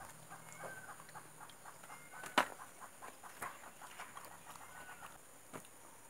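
Hands handling sticky jackfruit sections on a banana leaf: small crackles and clicks throughout, with one sharp click a little over two seconds in. Faint short bird calls sound in the background.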